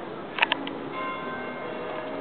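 A church bell ringing: several clear tones sound together from about a second in and hang on. Two sharp clicks come just before it, about half a second in.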